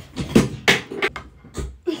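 A candle in a metal tin dropped, giving several sharp knocks and clatters as it lands and bounces. A metal tin, not a glass jar, so it survives the fall.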